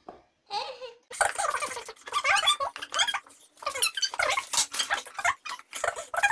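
Young children making repeated high-pitched squeals and babbling sounds in short wavering bursts, not words.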